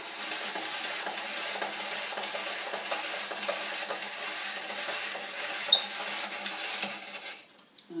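Hand-cranked plastic spiral vegetable slicer (Maison à vivre KS006) cutting half a cucumber into long spaghetti strands: a steady scraping, cutting noise as the crank turns. It stops shortly before the end, when only a small stub of cucumber is left.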